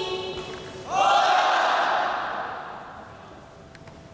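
Kendo fighters' kiai shouts: a long held shout ends just at the start, then about a second in a loud rising shout that fades away over the next two seconds.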